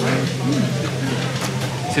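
Café background music holding a steady low note, with voices over it.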